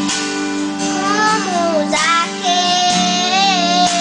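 A young boy singing over guitar backing music, coming in about a second in and holding a long, wavering note through the second half.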